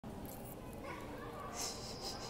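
A quiet voice close to the microphone, with a few short breathy, hissing sounds in the second half, over a steady background hum.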